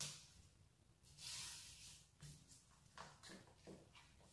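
Faint stirring of a thick milk-powder and ghee mixture in a nonstick frying pan with a silicone spatula: a soft hiss about a second in, then several short scraping strokes.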